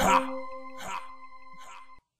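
Hip-hop beat at the end of a track: a sustained synth chord holds and then cuts off, while a short, sharp sound at the start repeats in fading echoes about every 0.8 seconds.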